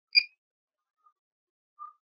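A single short, high electronic beep from the drone's remote controller, with two much fainter, lower blips about a second in and near the end; otherwise near silence.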